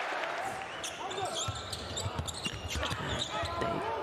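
A basketball being dribbled on a hardwood court, several bounces from about a second in, over the murmur of an indoor arena crowd and voices in the hall.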